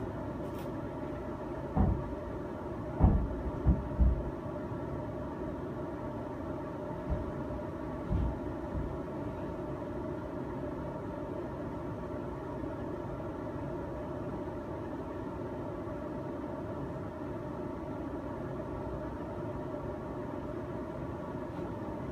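A steady mechanical hum made of several fixed tones. A handful of dull low thumps come in the first nine seconds or so, the loudest three close together about three to four seconds in.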